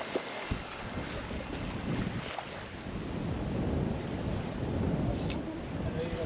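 Wind gusting on the microphone, with the sea washing against the jetty underneath.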